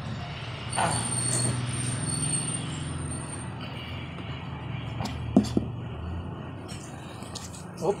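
A steady low hum, like an idling engine, runs throughout. Two sharp clicks come about five and a half seconds in.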